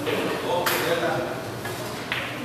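A single sharp click of billiard balls striking, about two thirds of a second in, over a low murmur of voices.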